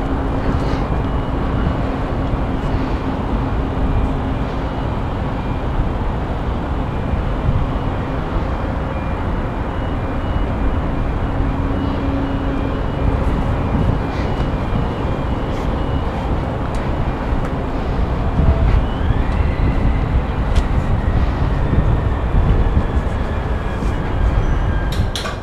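Steady wind rushing over a body-worn action camera's microphone high up on an iron tower, heavy in the low end and getting a little louder in the last few seconds.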